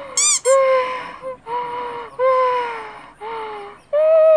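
A looped sound effect of long, pitched hooting calls, four in a row, each sliding down in pitch at its end. A quick, high, squeaky chirping flurry comes just before the first call.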